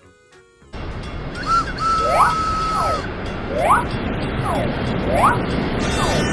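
Animated train sound effects: a steady rumble of an engine running on rails starts about a second in. Over it come a held whistle-like tone and several short swooping tones.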